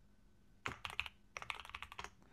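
Typing on a computer keyboard: a quick run of about ten keystrokes that starts just over half a second in.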